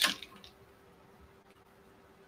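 Quiet room tone with a faint steady hum, just after the tail of a spoken word at the very start.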